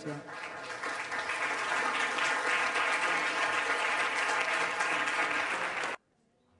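Audience applauding, building over the first two seconds and then holding steady, until it cuts off suddenly at the end.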